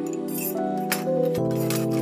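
Pluggnb-style instrumental beat intro: a sustained, held chord without drums that changes to a new chord about one and a half seconds in, with a short airy swish near the start.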